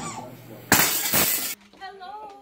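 A loud crash lasting under a second, cut off abruptly, followed by voices.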